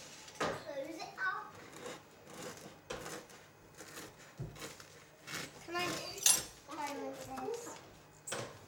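Quiet adult and child voices over a knife cutting through a crusty homemade loaf on a wooden chopping board, with a few short clicks of the blade and board.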